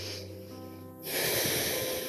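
Soft background music of held, steady notes, with a woman's loud breath close to the microphone about a second in, the loudest sound here.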